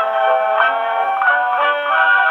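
A 1920s dance orchestra's fox trot played acoustically on a Pathé VII phonograph from a vertical-cut Pathé 78 rpm disc. The sound is thin and narrow, with no deep bass or high treble, as is typical of an acoustic recording heard through a phonograph horn.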